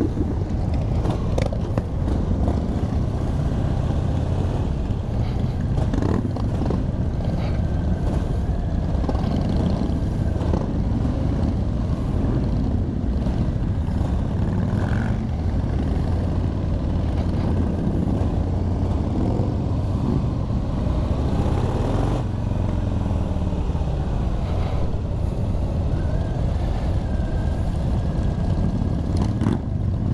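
A group of V-twin cruiser motorcycles, mostly Harley-Davidsons, running together at low speed as a convoy moves off. It is a steady low rumble from the rider's own bike and the bikes around it.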